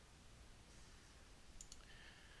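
Near silence: room tone, with one faint computer mouse click about one and a half seconds in.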